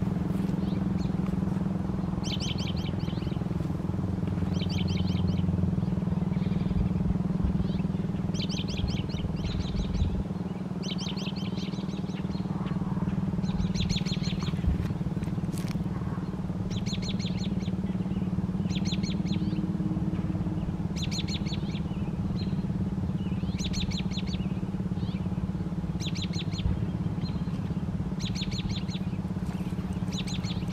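A small songbird repeating short, rapid trilled chirps every second or two, over a steady low mechanical hum that does not change.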